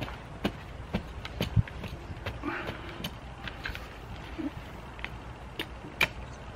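Metal tines of a hand garden tool scraping and knocking through clumpy, manure-like compost, breaking up the lumps: irregular soft scrapes and clicks, roughly one or two a second.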